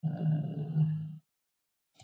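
A man's voice holding one drawn-out, steady-pitched hesitation sound for about a second, then stopping.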